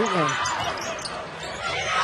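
Basketball game court sounds: the ball bouncing on the hardwood floor and sneakers squeaking, over crowd noise. It is a little quieter near the middle.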